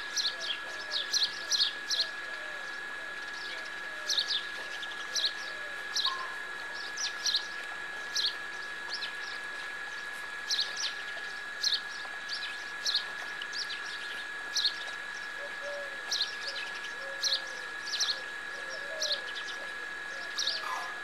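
Small birds chirping: clusters of short, quick, high chirps repeating every second or so, over a steady thin high-pitched tone.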